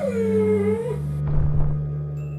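A canine whimper sound effect for a dying wolf: a single whine that falls in pitch and fades away within the first second. A low thud follows, over steady background music.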